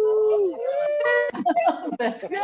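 Excited human cries of joy: one long drawn-out wail near the start, then a second, higher held cry, followed by several overlapping excited voices.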